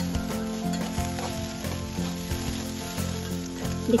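Soaked moong dal and rice roasting in oil and masala in a kadhai: a steady sizzle as it is stirred and turned with a metal spatula, with faint background music under it.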